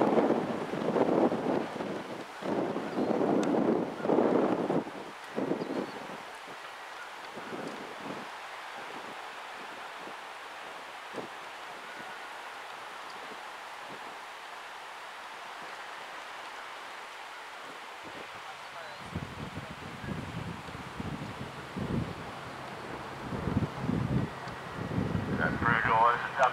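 Wind buffeting the microphone in low, irregular gusts at the start and again over the last several seconds, with a steady wind hiss in between.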